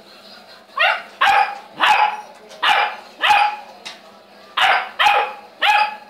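Saint Bernard puppy barking: about eight barks in three quick bursts, starting about a second in.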